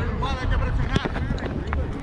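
Brief shouts from players over a steady rumble of wind on the microphone, with a few sharp knocks, the loudest about a second in.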